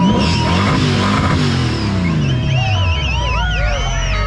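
Chevrolet Vega's engine at high revs in a burnout, the hiss of spinning tyres over it, then the revs winding down steadily over the next couple of seconds. A warbling high tone comes in near the end.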